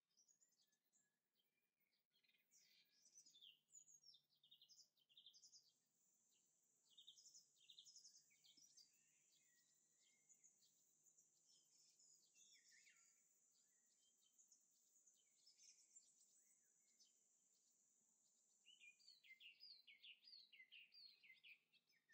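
Near silence: faint room tone with scattered, faint high-pitched chirps and, through the middle, a faint steady high whine.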